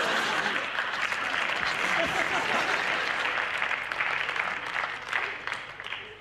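Studio audience applauding, the clapping dying away near the end.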